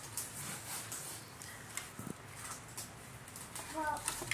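Quiet room with faint, scattered rustles and light taps of things being handled, and a short bit of voice near the end.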